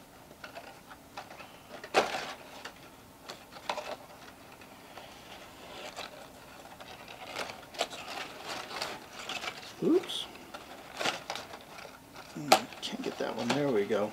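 Cardstock paper rustling, with scattered light clicks and taps, as a printed paper curtain is slid into the slots of a folded paper theater model. Short wordless vocal sounds come near the end.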